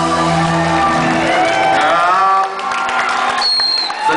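A live rock band's final held chord rings out and dies away in the first second or two, followed by the audience cheering.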